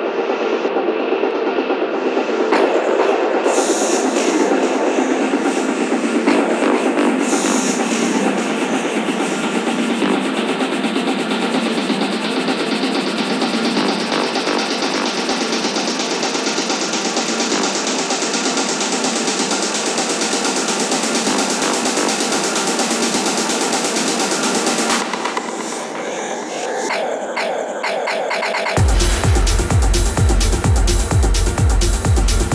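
Techno DJ mix in a breakdown: the kick and bass are cut out, and a rising noise sweep builds over about fifteen seconds. The track thins out briefly, then the kick drum and bass drop back in just before the end.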